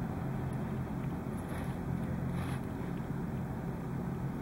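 Steady low hum over a faint hiss: background room tone with no distinct event.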